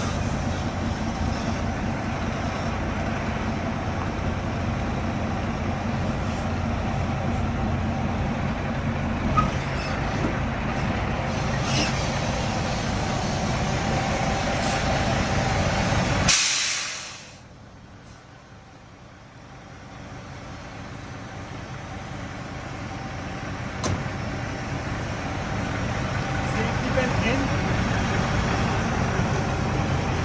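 Diesel semi-truck tractor idling steadily, then about halfway through a short, loud hiss of air from the air brakes.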